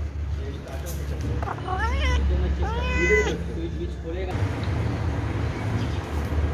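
Domestic cat meowing: a few short rising calls about two seconds in, then one longer meow that rises and falls about three seconds in, over a steady low rumble.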